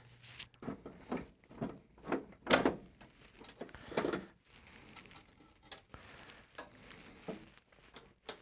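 Scattered light knocks, clicks and rustles of handling at a metal equipment rack, the loudest around the middle, as a hand tool is fetched and the rack's panels are worked on.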